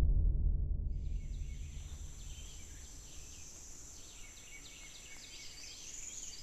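A low rumble fades out over the first two seconds, then faint swamp ambience fades in: a steady high-pitched insect drone with repeated short chirps.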